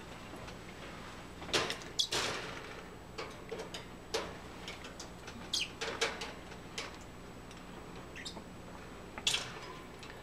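Duct tape being peeled in strips off the wire of a bird cage: a scatter of short tearing and scraping sounds at irregular intervals, over a faint steady low hum.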